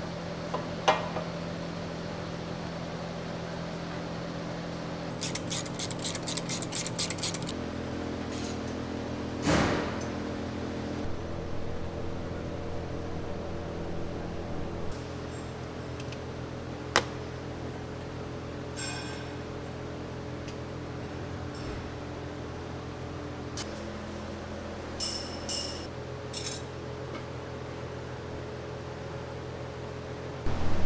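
Hand tools working on a truck's engine and exhaust during reassembly: scattered metal clinks and taps, a quick run of ratchet clicks about five seconds in, and a thud near ten seconds, over a steady low hum.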